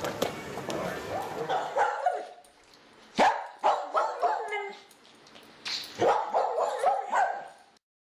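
A dog barking and yipping in short calls. A few come about three seconds in, then a longer run starts at about six seconds and cuts off just before the end.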